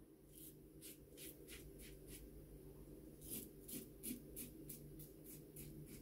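RazoRock Gamechanger 0.84 double-edge safety razor cutting stubble through lather on the upper lip and chin, first pass: faint, short scraping strokes in two quick runs with a pause of about a second between them.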